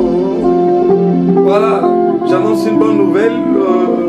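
Live worship music: an electric guitar and a keyboard play sustained chords, with a man singing a melodic line over them in two short phrases.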